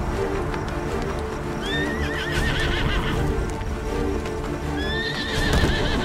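Przewalski's horse stallions neighing as they fight: two wavering, pitched calls, the first about one and a half seconds in lasting over a second, the second near the end. Background music with held notes runs under them.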